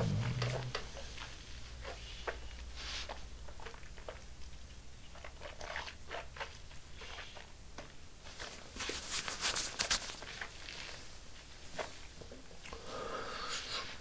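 Quiet mouth sounds of someone sipping and tasting bourbon: small lip and tongue clicks throughout, with a short cluster of sharp slurping noises about nine seconds in as the whiskey is taken in.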